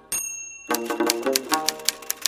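Title-animation sound effects over plucked-string music: a bright bell-like ding right at the start, held for about half a second, then rapid typewriter key clicks, about eight a second, as the music comes back in.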